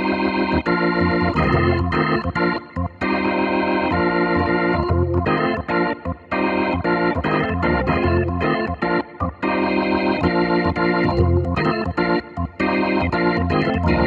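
Clavia Nord Electro 3 stage keyboard playing its organ sound: chords over bass notes, played in short phrases broken by brief gaps.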